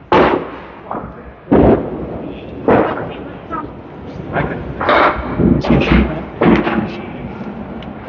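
Candlepin bowling balls and pins crashing and thudding in an echoing bowling hall, about five sharp impacts over several seconds, with background chatter.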